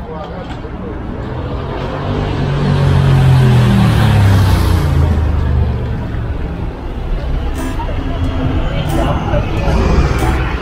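A motor vehicle passes close by on the street: its engine noise builds to a peak a few seconds in, then fades with a slight drop in pitch.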